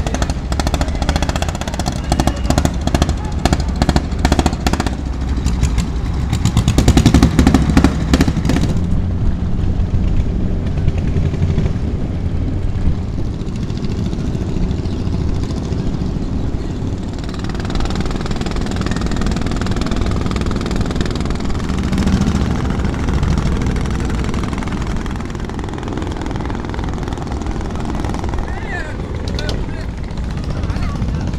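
A small wooden boat's engine running with a rapid knocking beat over a steady low rumble, loudest for the first nine seconds or so. People's voices talk in the background later on.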